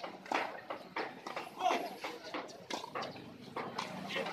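Tennis ball being struck by rackets and bouncing on a hard court during a rally: a series of sharp pops at uneven intervals.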